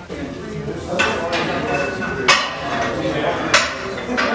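Three sharp metallic clanks of iron weight plates and a barbell, each with a brief ring, over people talking nearby.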